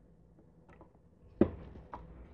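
Small handling sounds of a bottle, a paper cup and a wooden stirring stick on a workbench: a few faint ticks, then one sharp knock about a second and a half in, and a fainter click just before the end.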